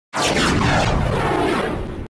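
Title-animation sound effect: a loud, noisy sweep with several tones sliding downward over a deep boom. It cuts off suddenly after about two seconds.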